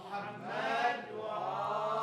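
A group of men chanting together in unison: a slow, drawn-out sung salawat answering the reciter's call. It is much softer than the reciter's own amplified voice.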